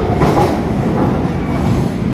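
SMRT C151 metro train (Kawasaki–Tokyu Car build) departing the station: steady running noise of its wheels and cars on the track as the tail end pulls away.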